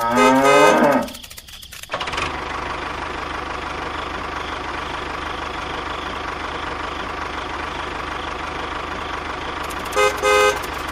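A cow moos once, a long call that ends about a second in; after a short pause an engine starts running steadily, the sound of the mini tractor.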